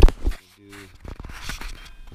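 Camera being handled against the tractor's underside: two loud knocks right at the start, then light rubbing and a run of small clicks.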